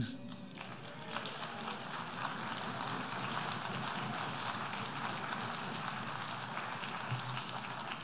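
Audience applauding in a large hall, fairly faint. It swells about a second in, holds steady, and is starting to thin near the end.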